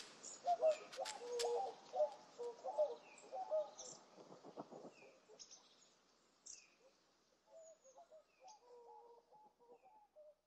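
Birds chirping softly: short falling chirps over a lower warbling call, fading gradually over the last few seconds.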